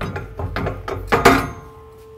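Steel pipe weld-test coupon being gripped with pliers and pulled off its stand: a run of metal clicks and scrapes, with a louder clank a little over a second in.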